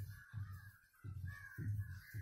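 Crows cawing faintly in a quick series of short caws, about two a second.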